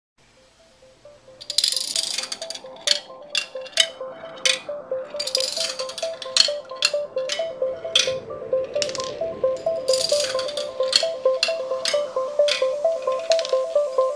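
Background music: a repeating line of short mid-pitched notes, with a burst of shaker-like rattle about every four seconds and sharp clicks in between.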